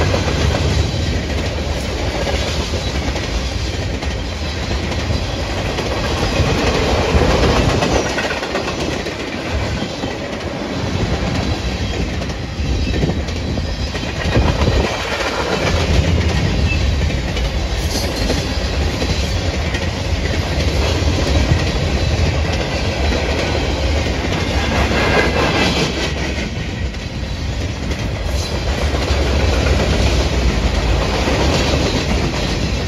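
Freight train cars rolling past close by: a steady rumble of steel wheels on rail that swells and eases slightly as the cars go by.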